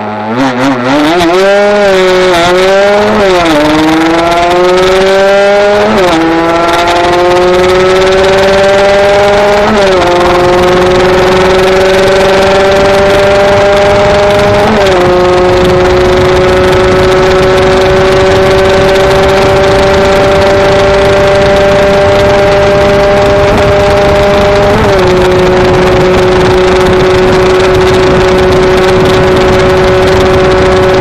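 Kawasaki KR-R 150's two-stroke single-cylinder engine at full throttle, pulling up through the gears: after some uneven throttle at first, the pitch climbs in each gear and drops sharply at each of about five upshifts. Each gear is held longer than the last, and in the top gear the pitch barely rises as the bike nears its top speed.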